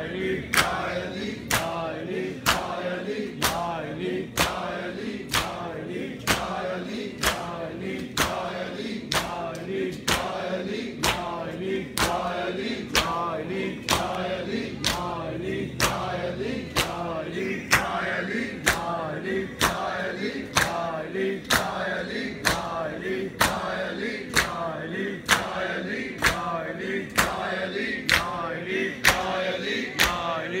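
Matam: a crowd of bare-chested men slapping their chests in unison, a sharp beat a little more than once a second, under a nauha chanted by male voices.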